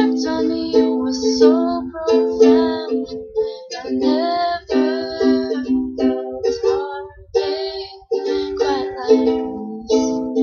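Ukulele strummed in a steady pattern of chords, with sung notes over it in places.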